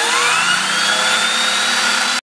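Vacuum cleaner running with a Bissell TurboBrush attachment on its hose: a loud, steady rush of air under a whine that is still rising in pitch as the motor spins up, levelling off near the end.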